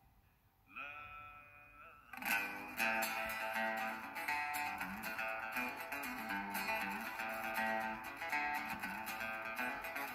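Acoustic guitar: a single chord rings out about a second in, then from about two seconds in the guitar picks a steady song intro with a moving bass line.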